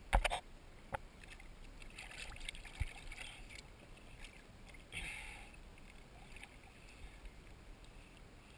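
Lake water lapping and splashing close to a camera at the water's surface. There is a sharp knock right at the start and lighter knocks about one and three seconds in.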